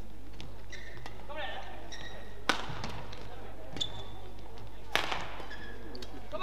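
Badminton rackets striking a shuttlecock during a doubles rally. There are two sharp hits about two and a half seconds apart, and the later one comes near the end. Fainter knocks and short high squeaks of shoes on the court mat come between them.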